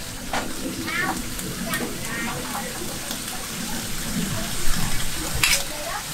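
Small whole fish sizzling as they stir-fry in a metal wok, with a metal spatula stirring and scraping through them. A sharp clack about five and a half seconds in.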